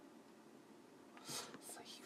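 Faint room tone, then about a second in a man's breathy whisper, a few short hissy puffs leading into speech.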